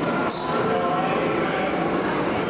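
Dark-ride soundtrack playing through the ride's speakers: a steady, dense mix of voices and sound effects, with a short hiss about a third of a second in.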